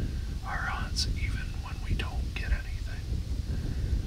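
A man speaking quietly in a whisper, over a steady low rumble.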